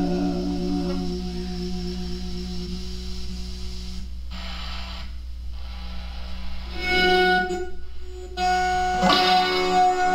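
Electric guitar played through effects pedals: a held chord rings on and slowly fades. New notes come in about seven seconds in and again about nine seconds in.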